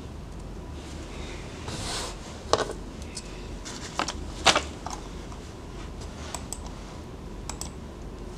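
Handling noise close to the microphone: a few sharp clicks and knocks, the loudest about two and a half and four and a half seconds in, with brief rustling, over a low steady hum.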